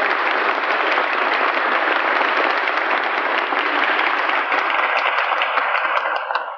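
Audience applauding steadily, on an old recording with a dull top end.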